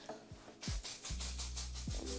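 A quick run of short hisses from a pump-spray hair shine mist being sprayed onto hair. Background music with a steady bass comes in about a second in.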